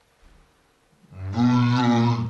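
A man's low voice, playing a teddy bear, holding one long drawn-out sound at a steady pitch, starting about a second in.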